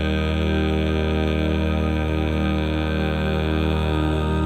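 Four-part a cappella barbershop harmony holding one long, steady chord, with the bass part mixed louder than the other three.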